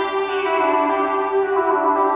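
Sustained electronic drone in improvised experimental music: a steady, loud tone with a dense stack of overtones, its upper tones shifting and swelling while the low tone holds.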